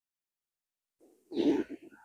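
Silence, then about a second and a half in a short, grunt-like vocal sound from a person.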